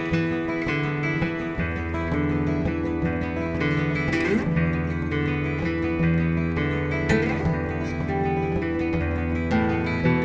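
Two acoustic guitars, one of them a nylon-string classical guitar, playing a plucked, ethnic-flavoured melody over a steady low drone. A water-filled crystal glass, rubbed to sing, sustains a ringing tone along with them.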